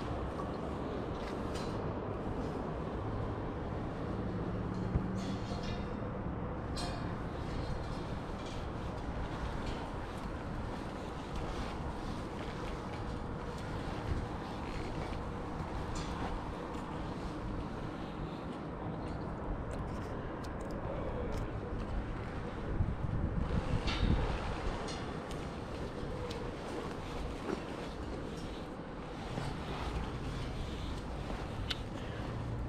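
Boots and hands knocking and clanking now and then on the steel ladder rungs of a tower crane's lattice mast during a climb down, over a steady low rumble. The knocks come loudest and closest together about three quarters of the way through.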